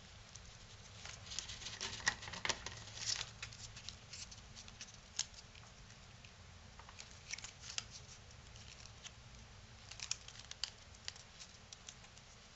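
Strip of cardstock being folded and creased by hand: faint crinkles and small sharp clicks as the paper is pinched and pressed down, coming in short clusters with quiet gaps between.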